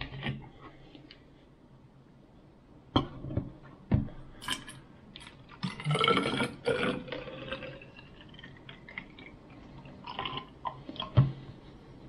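A plastic bottle handled with a couple of sharp knocks, then alcohol poured from it into a tall glass hydrometer cylinder, gurgling for a second or two about six seconds in; another knock near the end.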